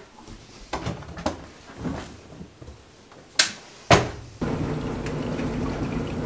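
Front-loading washing machine being loaded and started: light knocks and handling sounds, two sharp clicks about half a second apart, then a steady low hum from the machine as its drum turns with the laundry.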